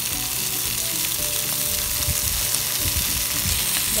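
Raw chicken pieces sizzling in hot oil with chopped onion in a nonstick wok, a steady hiss, while tongs turn the pieces with a few dull knocks in the second half.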